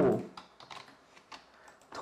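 Faint computer keyboard typing: a handful of quick, scattered key clicks.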